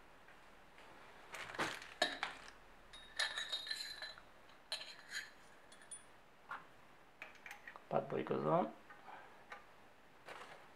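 Irregular clinks and knocks of metal motorcycle fork parts, a chromed fork tube and its bushes, being picked up and handled on a stainless steel workbench. A few of the clinks ring briefly about three seconds in.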